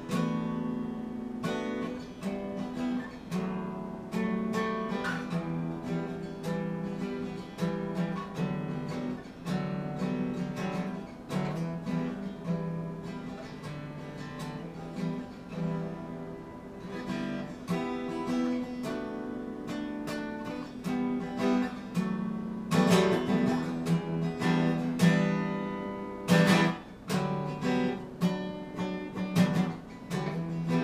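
Solo acoustic guitar, picked and strummed as the instrumental opening of a song, growing louder with harder strums about two-thirds of the way through.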